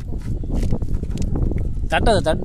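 Water sloshing and splashing in a plastic bucket as a hand gropes through it, with many small irregular splashes and knocks over a steady low rumble. A voice starts right at the end.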